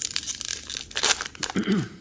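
An Allen & Ginter hobby pack's wrapper being torn open and crinkled by hand: a quick run of paper-and-foil crackles and tearing.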